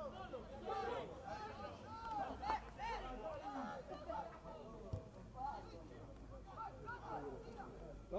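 Indistinct voices of players and spectators calling out on an open football pitch during play, with a single sharp knock about five seconds in.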